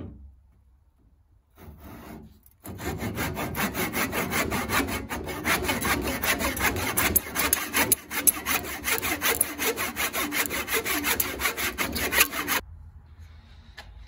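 Hand backsaw cutting across a clamped wooden board: a few light starting strokes, then rapid, even back-and-forth strokes. It stops about a second before the end, as the cut goes through.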